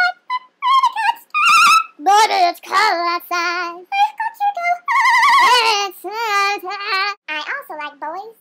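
A woman singing unaccompanied, in short phrases with long held, wavering notes.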